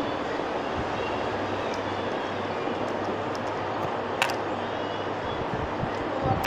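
Steady rushing background noise with a faint low hum underneath, broken by one sharp click about four seconds in.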